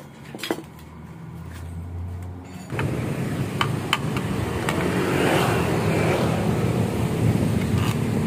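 A motor vehicle engine running steadily, starting suddenly about three seconds in, with a few sharp metallic clicks over it as the muffler is fitted onto the scooter.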